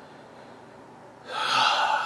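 A man's heavy breath through his open mouth, starting about a second in after a quiet pause and lasting under a second.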